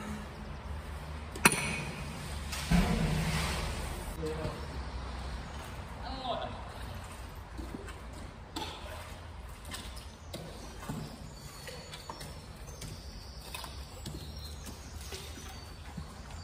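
A sharp knock about a second and a half in, then a splash that dies away over a couple of seconds as a magnet fishing magnet goes into the canal, followed by low steady outdoor background with faint voices.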